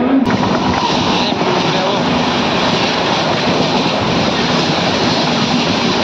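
Passenger train running slowly, heard from its open doorway: a steady rush of wheel, track and wind noise.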